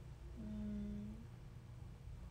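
A woman's short closed-mouth hum, 'mm', held on one steady pitch for just under a second, faint, over low room noise.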